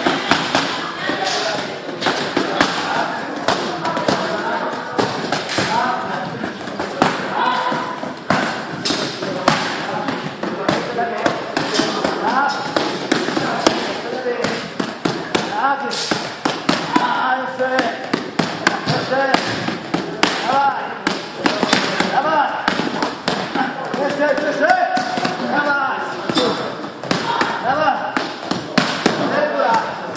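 Boxing gloves smacking focus mitts in quick, irregular combinations, many sharp strikes throughout, with a voice talking over them.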